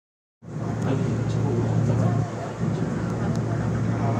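Seoul Subway Line 2 train heard from inside the car as it runs alongside a station platform: steady low hum and running noise, starting abruptly about half a second in.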